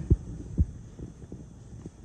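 A few soft, low thumps of footsteps on a carpeted floor, the first two the strongest, over a low steady room hum.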